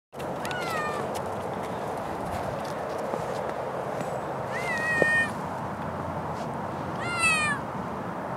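A seal-point cat meowing loudly three times, each call under a second long and sliding down in pitch at its end.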